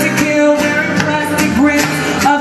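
Live band music with a sung vocal line, played over a PA system, with guitar and a regular drum beat under the voice.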